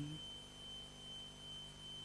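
A pause in speech, holding only faint room tone: a steady low electrical hum with a thin, steady high-pitched whine.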